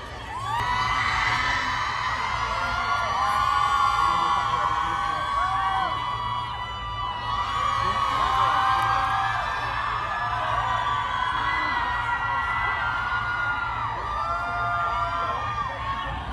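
Large crowd cheering and screaming, many high-pitched shrieks and whoops overlapping. It swells about half a second in, eases briefly around six seconds, then rises again.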